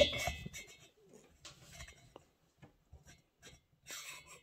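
A ringing metal clink fades out at the start, then a string of faint, light clicks and taps as a Husqvarna 395 chainsaw piston, with its rings, is slid by hand into its cylinder.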